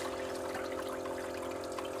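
Julabo ED immersion circulator running: a steady motor hum with its circulation pump churning and splashing the water in the bath.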